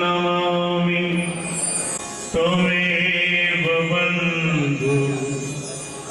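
A man singing a slow devotional chant into a microphone, in long held notes with a short breath about two seconds in.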